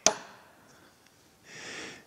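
A single sharp metallic click as a transaxle gear part is slid and seated onto the input shaft on the flywheel, dying away quickly. A faint, soft hiss follows near the end.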